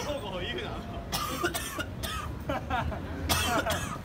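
Passersby talking close by, broken by two short noisy bursts, over a low steady city traffic rumble.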